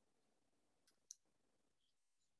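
Near silence with a pair of faint, brief clicks about a second in, the sound of a computer mouse or key being clicked to advance a presentation slide.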